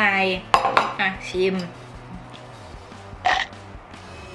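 A woman speaks a few words in Thai, with a single sharp click about half a second in. It then goes quieter, with one short noisy burst near the end.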